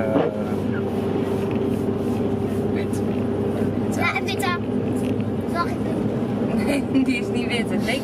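Steady road and engine drone inside a moving car's cabin, with a constant low hum. Short bits of voices come through about halfway and again near the end.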